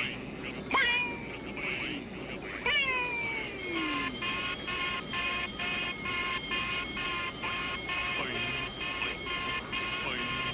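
Film soundtrack sound effects for bouncing ping-pong balls: two whistling tones that slide steeply down in pitch, about one second and three seconds in. From just before four seconds in, a steady chord of high electronic tones pulses on and off about twice a second.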